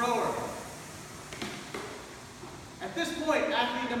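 A man speaking, with a pause of about two seconds in the middle that holds only a faint hiss and a couple of light knocks.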